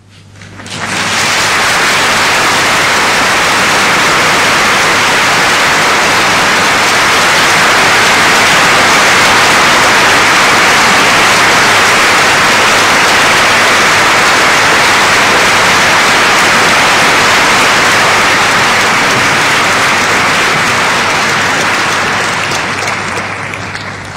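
Audience applauding, swelling up within the first second, holding steady and loud, then slowly thinning out near the end.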